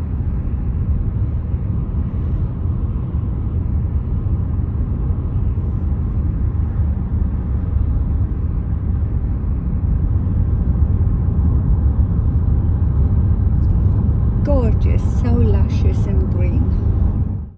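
Steady low road and engine rumble inside a moving car's cabin. Near the end, a short higher sound with gliding pitch cuts in over it.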